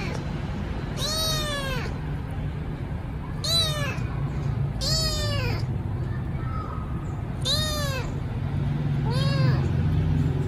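Young tabby kitten meowing loudly five times, each call rising then falling in pitch: hungry calls for food.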